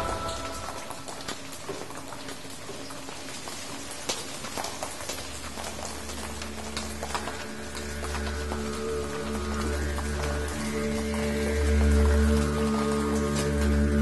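Rain pattering, with scattered sharp drop clicks. About six seconds in, a low, sustained droning music swells in underneath and grows louder.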